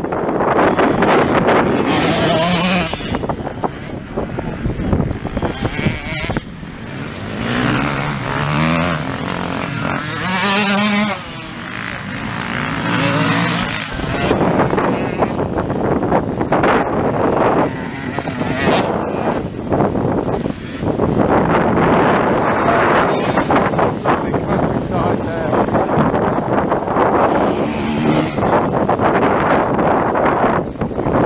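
Enduro motorcycles running across the field, their engine notes climbing and stepping as the riders change gear, most clearly around the middle. Heavy wind noise on the microphone.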